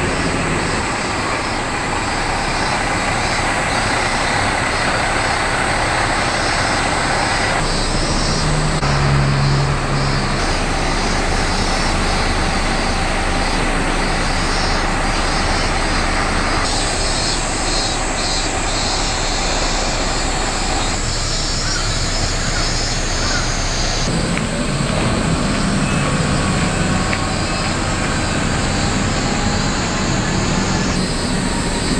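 A diesel railcar's engine running steadily at a small station. The sound shifts abruptly several times where the shots change.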